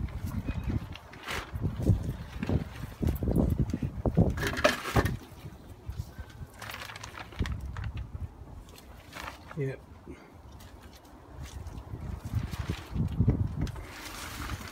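Irregular rustling, scuffing and knocking of a muddy plastic sheet being handled and hung up, heavy at first and near the end with a quieter stretch in between.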